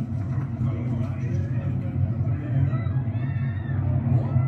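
Football broadcast audio playing back: a commentator's voice over a steady low rumble.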